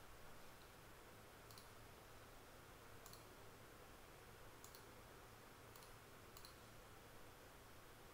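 Faint computer mouse clicks, about five or six spread a second or so apart, over near-silent room tone.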